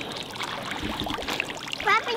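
Water splashing and trickling in small, crackling patters as a landed catfish moves in a landing net held in the water.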